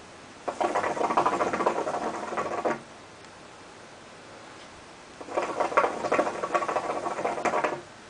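Water bubbling in a hookah base as two long pulls are drawn through the hose, each a rapid gurgling lasting about two and a half seconds, with a quiet gap between them.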